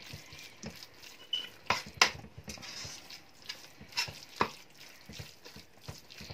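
A spatula stirring a thick minced chicken mixture in a stainless steel wok, scraping the pan with scattered knocks against the metal, the sharpest about two seconds and four seconds in.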